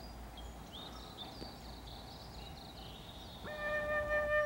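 A Chinese bamboo flute starts a clear, held note near the end, the opening of a slow melody. Before it, faint high chirping.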